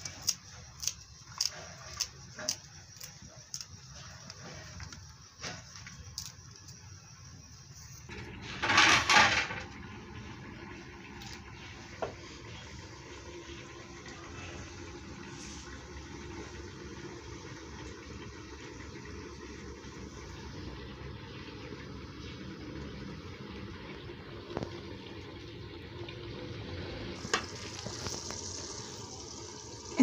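Knife chopping fresh coriander against a ceramic plate, sharp cuts about twice a second for the first six seconds. A loud brief rush of noise follows around nine seconds in, then a steady low hiss.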